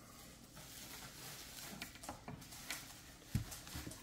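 Faint room noise with a few light clicks, and a short low knock a little after three seconds in.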